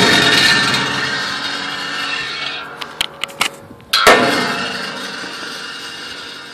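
Steel ringing from a spring-loaded hammer's blow on a beer-can crusher built onto a steel smoker, fading slowly. A few light clicks follow, then a second metal clang about four seconds in that rings and fades too.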